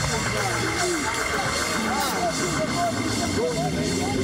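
Many voices of a worshipping congregation crying out and wailing over each other, over held low organ notes that shift pitch now and then.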